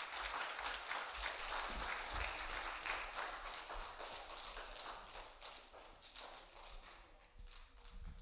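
Audience applauding, loudest at first and dying away over the last few seconds.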